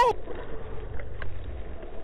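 Steady low rumble and hiss of wind and water around an open fishing boat, with two faint ticks about a second in.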